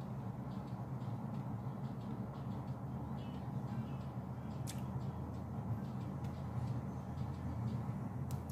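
Faint music leaking from a pair of wired in-ear earphones, under a steady low hum.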